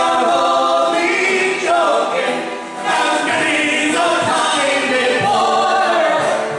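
Live folk band singing together in harmony, a woman's and men's voices in chorus over acoustic guitar, with a short break between sung lines about halfway through.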